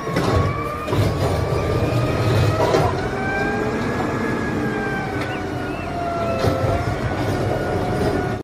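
Automated side-loader garbage truck working its lifting arm: the diesel engine runs under load with a steady rumble, and a wavering hydraulic whine sounds as the arm lifts a wheeled trash cart, tips it into the hopper and lowers it again.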